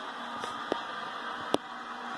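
Steady engine noise of NASCAR stock cars from a televised race playing in the room, with two sharp clicks about a second apart.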